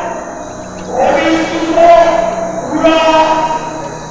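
An elderly monk's voice intoning into a microphone over a PA in long, held notes of steady pitch, in two phrases.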